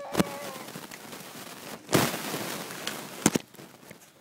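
Handling noise: a sharp knock near the start, a loud rustling burst about two seconds in, and a quick double knock a little after three seconds, over a steady hiss.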